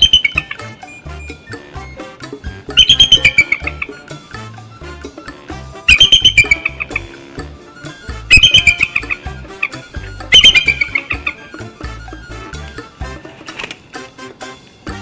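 Bald eagles calling while mating: five bursts of rapid, high chattering notes, each about a second long and falling slightly in pitch, over background music.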